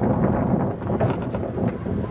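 Wind buffeting the camera microphone, a dense low rumble, with a faint knock about halfway through.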